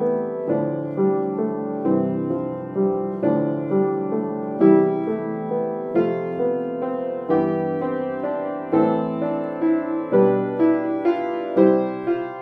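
Upright piano playing a chord progression in C major through major and minor triads: block chords in the left hand under triplet broken-chord figures in the right, with fresh notes about every half second.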